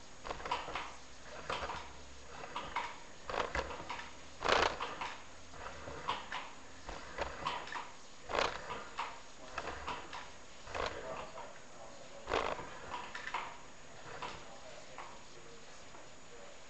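Irregular knocking and scraping as a sewer inspection camera's push cable is fed along a pipe, about one or two knocks a second, the loudest about four and a half seconds in.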